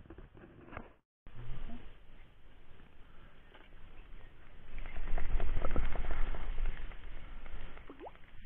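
Handling and rustling noise against a body-worn camera, with scattered clicks and a low rumble that grows louder over the second half. The sound cuts out completely for a moment about a second in.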